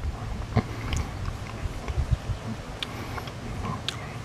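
A person chewing a bitten-off piece of pencil yam (Australian native yam) tuber, with small crunching clicks scattered through.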